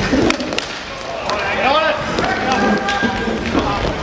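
Players' shouts and calls during an inline hockey game, with one call held steady for about a second past the midpoint, over sharp clacks of sticks and puck on the rink floor.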